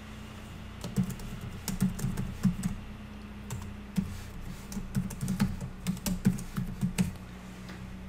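Typing on a computer keyboard: a run of irregular keystrokes that starts about a second in and stops about a second before the end.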